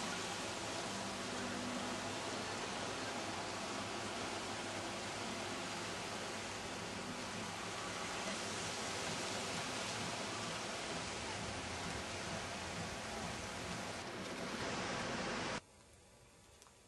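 Steady rushing noise of wind and sea surf, even and unbroken, that cuts off suddenly near the end.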